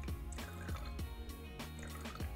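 Liquid brush cleanser poured from a plastic bottle into the water-filled glass bowl of a StylPro brush cleaner, dripping and trickling under background music with a steady beat.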